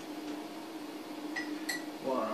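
Two quick light clinks, a dessert spoon knocking against the hookah vase as baking soda is spooned into it, about a second and a half in. A steady low hum runs underneath.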